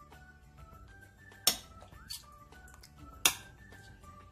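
Soft background music, with two sharp clicks, one about a second and a half in and one a little after three seconds: a metal spoon knocking against a glass baking dish while tomato sauce is spread.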